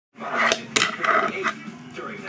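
A few sharp clicks of a fingerboard against a wooden tabletop, three of them standing out, over voices and music from a television sports broadcast.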